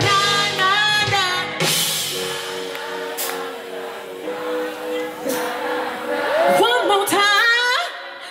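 Live band with female lead vocals: a sung line with vibrato, then a steady held chord, then quick, swooping vocal runs near the end.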